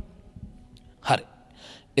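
A pause in a man's speech picked up by a handheld microphone: one short spoken word about a second in, then a faint intake of breath.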